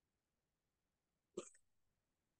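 Near silence, broken once about one and a half seconds in by a brief, sharp breath from a man exercising, as he comes up out of a squat.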